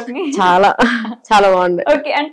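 A woman's voice: three short stretches of speech-like sound, the loudest near the end.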